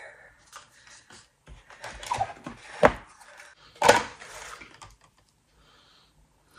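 Light clicks and taps from a small glass perfume bottle and its cardboard gift box being handled, with two sharper clicks about three and four seconds in.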